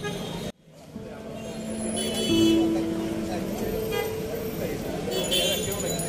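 Street ambience of a gathered crowd chattering, with traffic; a vehicle horn sounds about two seconds in, held steady for over a second.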